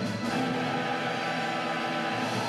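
Orchestral music from a live cantata performance, with bowed strings holding long, sustained notes.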